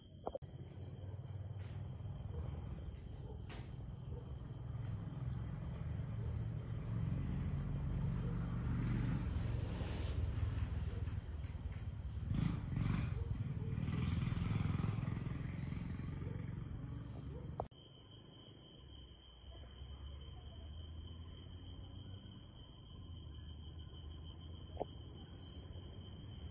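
Night insects chirring steadily at several high pitches. A louder low rumbling noise swells and fades under them for the first two-thirds, then stops abruptly, leaving the insects.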